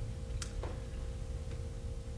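Quiet room tone: a steady low hum with a thin steady tone over it, and a faint sharp click about half a second in.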